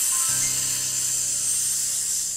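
A long, steady, high 'sssss' hiss standing for snakes in a sack, with a low steady hum coming in under it shortly after it starts.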